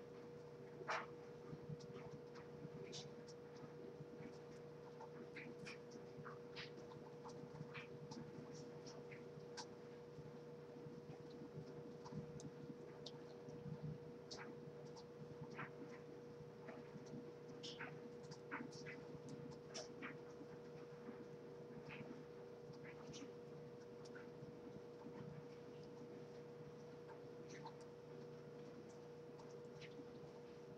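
Faint, irregular scratchy rustles and small crackles of hands twisting and rolling natural hair into knots, over a steady electrical hum.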